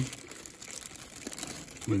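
Thin clear plastic bag crinkling continuously as a pipe is slid out of it by hand.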